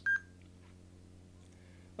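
A single short electronic beep just after the start, followed by a faint, steady low electrical hum.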